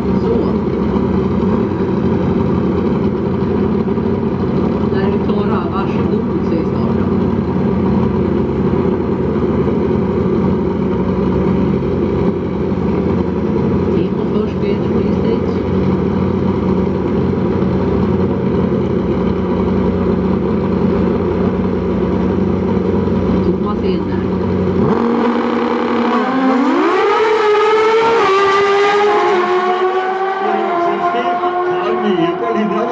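Two Pro Stock drag motorcycles running steadily on the start line, then launching about 25 seconds in: the engine note climbs in steps as they shift up through the gears while pulling away down the strip.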